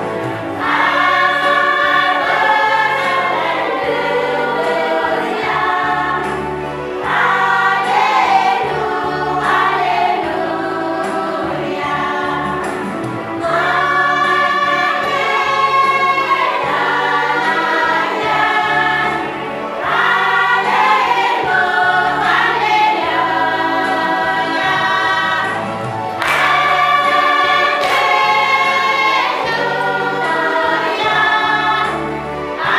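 A large group of women singing a church song together in phrases of about six seconds, over an amplified accompaniment with a low bass line.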